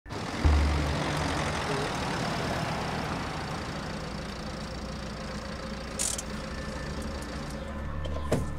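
Ford Transit Connect van's engine running at low speed as the van rolls slowly up and comes to a stop, with a steady low hum. There is a brief hiss about six seconds in.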